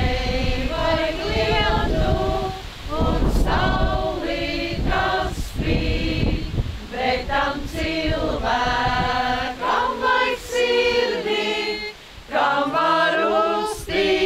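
A group of Suiti women singing a traditional mičošana (bride-capping) song without accompaniment, in held phrases broken by short pauses for breath.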